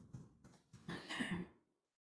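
A woman softly clearing her throat about a second in.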